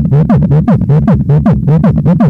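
Beatboxing into a handheld microphone: a fast, even run of falling bass sweeps, about six a second.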